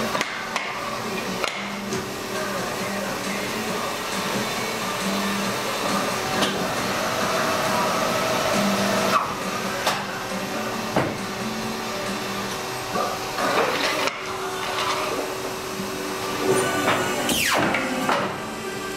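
Printed sheets being handled and jogged on the steel table of a Perfecta Seypa 92 TV guillotine paper cutter, with several sharp knocks as the stack is squared and pushed in, over a steady hum. A short falling whine comes near the end.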